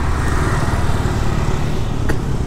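Motorbike riding noise: the engine running steadily with road noise, as other motorbikes pass close by.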